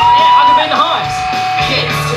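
Start of a comedy rock song: long held high notes with a yelled voice over them, and a bass line coming in near the end.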